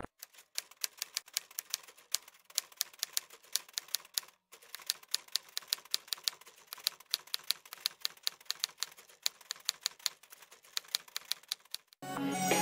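Typing sound effect: a quick, uneven run of light key clicks, several a second, with a brief pause about four seconds in.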